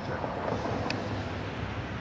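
Steady street traffic noise, with a faint click a little under a second in.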